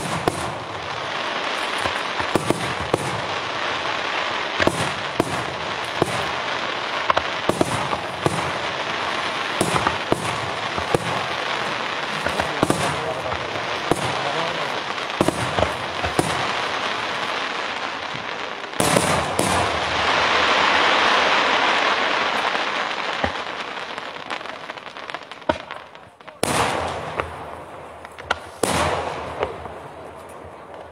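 Daytime fireworks barrage: a dense, continuous crackle of firecrackers and shell bursts with many sharp bangs, swelling to its loudest about 19 seconds in, then fading, followed by a few separate loud bangs near the end.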